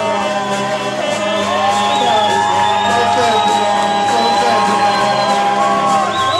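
Live rock band with acoustic and electric guitars playing loudly, with long held notes over the band.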